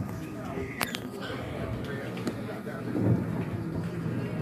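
Hall ambience in a pause between speakers: a low murmur of faint voices and room noise, with one sharp click about a second in.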